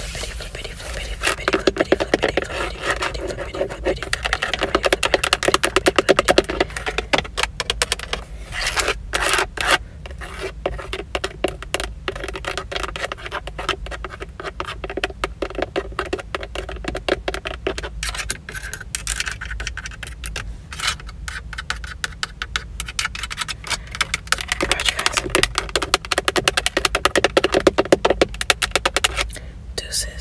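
Long fingernails tapping rapidly on a Toyota steering wheel's leather-covered centre pad and chrome emblem. The light clicks come in a fast, almost continuous run, busier in some stretches than others.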